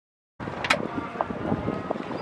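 A moment of dead silence, then wind buffeting the microphone on a boat cuts in abruptly, with a sharp knock just after it starts.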